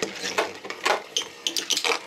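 Two metal Beyblade spinning tops clattering around a plastic stadium, striking each other and the bowl in a string of sharp, irregular clicks, several close together near the end.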